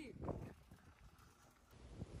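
Mostly quiet outdoor background: a few faint soft knocks in the first half-second, then near silence.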